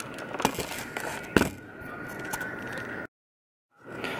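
Rustling and a few knocks from a handheld camera being handled and set down, the loudest knock about a second and a half in. Near the end the sound drops out completely for under a second at an edit cut, then quiet room tone returns.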